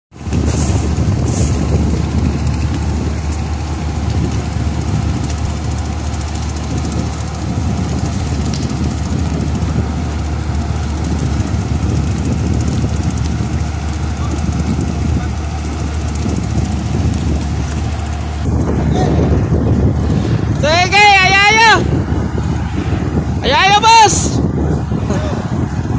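Marine diesel engines running, a steady low drone and rumble. Near the end, two short high calls waver in pitch.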